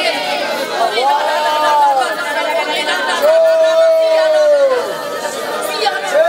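A congregation praying aloud all at once, a loud babble of many voices, with two long drawn-out cries that rise and then fall away, one about a second in and one just past the middle.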